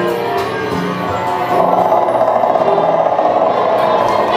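Dark-ride soundtrack music playing. About one and a half seconds in, a loud, rapidly fluttering mid-pitched tone joins it.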